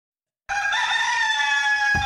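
A rooster crowing once: a single long held call that starts about half a second in.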